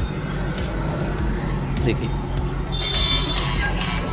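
A video's audio, music mixed with voices, playing at full volume through an Oppo A31 smartphone's small loudspeaker. The speaker grille has just been cleared of dust with tweezers, which has cured its weak, quiet output.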